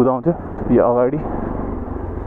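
A voice making short wordless sounds, the longest one about a second in, over a Bajaj Pulsar NS200's single-cylinder engine running steadily at low speed.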